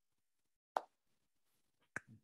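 A single short pop a little under a second in, then a sharper click near the end, over near silence.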